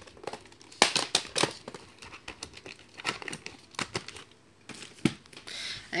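Plastic VHS cassette and its clamshell case being handled: a series of sharp clicks and clacks, with some plastic crinkling, in a few clusters.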